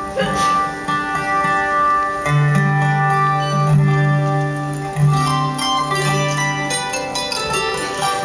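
Acoustic instruments on stage sounding a run of long held notes, with a strong low note held from about two seconds in until near the end.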